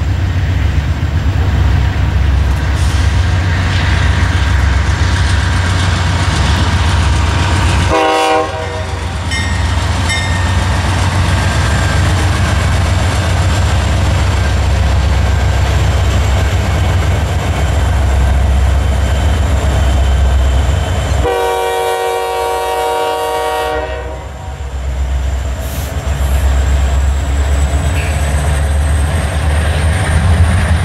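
A multi-unit lashup of diesel freight locomotives, including Union Pacific's Katy heritage SD70ACe No. 1988, passing close by with a heavy low engine rumble, then hopper cars rolling past. A locomotive horn sounds a short blast about eight seconds in and a longer blast of about three seconds a little past twenty seconds in.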